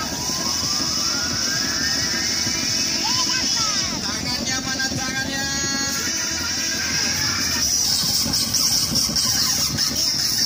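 Busy night-market background: music and people's voices over a low rumble and a steady high hiss, with a whistling tone that rises slowly over the first four seconds.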